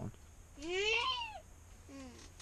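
A young child's high, wordless vocal call, rising then falling in pitch, lasting close to a second and starting about half a second in.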